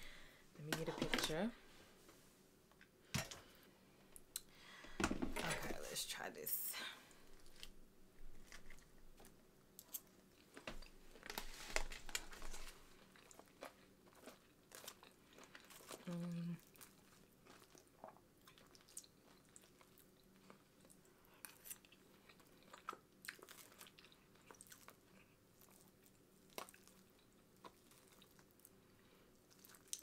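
A person eating fried chicken nuggets: close-up chewing with irregular crunches and small clicks throughout.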